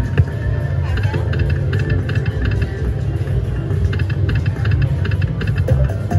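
Ainsworth slot machine's free-games bonus music: a low throbbing beat under bursts of quick, repeated high chimes as small wins are tallied.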